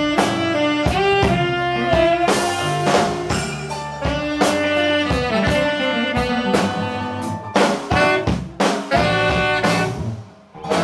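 Live blues band playing an instrumental passage: two saxophones playing held, riffing notes over a drum kit's steady beat.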